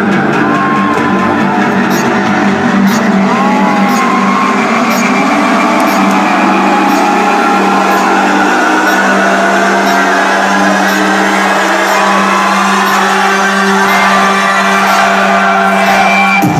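Loud electronic dance music build-up played over an arena sound system: a held low drone with a sweep rising over several seconds in the middle. A crowd whoops and cheers over it now and then.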